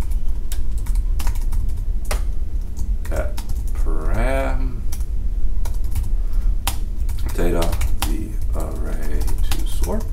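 Typing on a computer keyboard: irregular keystroke clicks, with a steady low hum underneath.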